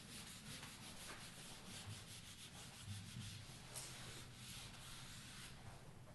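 Faint scrubbing of a whiteboard eraser being wiped across a whiteboard in quick repeated strokes.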